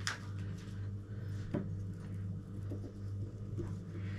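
Light handling knocks and clicks over a steady low hum: one sharp click right at the start, another knock about a second and a half in, and a few faint ticks as a piece of butter is brought to a glass baking dish.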